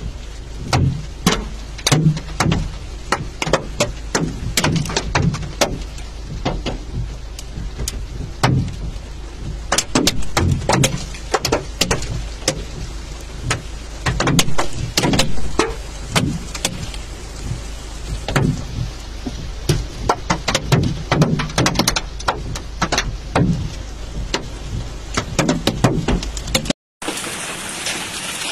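Hailstones pelting a car's roof and windscreen from inside the car: a dense, irregular clatter of sharp clicks and heavier knocks over a steady low rumble.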